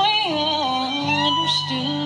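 Bluegrass band playing an instrumental break, led by a fiddle melody with sliding notes over acoustic guitar, mandolin and upright bass.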